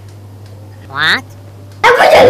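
A single short yelp rising sharply in pitch, about a second in, over a steady low hum.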